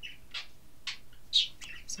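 A bird chirping: a few short, separate high chirps in a pause between speech.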